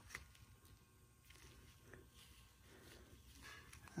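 Near silence, with a few faint clicks of a socket and tools being handled in a metal tool tray.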